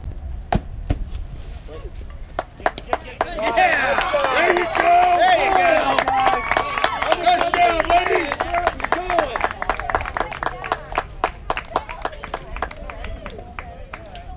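Young players and spectators at a softball field cheering and yelling together, many high voices overlapping for several seconds, with scattered clapping. A single sharp knock comes about half a second in, before the cheering rises.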